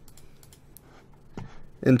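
Faint, light clicking of a computer keyboard, a few scattered taps.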